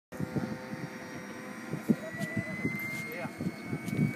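Model jet turbine engine starting up: a high whine that comes in about halfway through and rises slowly in pitch as it spools up, over steady higher whistling tones. Low voices and handling knocks are close by.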